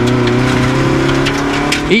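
Rally car engine accelerating hard out of a corner, heard from inside the cabin. Its note climbs slowly and steadily.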